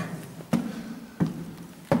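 Footsteps on a stone floor: three steps about two-thirds of a second apart, each a sharp knock.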